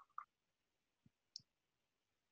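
Near silence broken by a few faint, short clicks.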